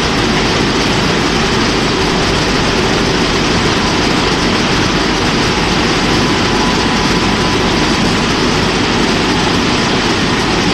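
Ceccato Antares rollover car wash machine running: a steady, loud rushing noise with no breaks. A faint high tone joins about six seconds in.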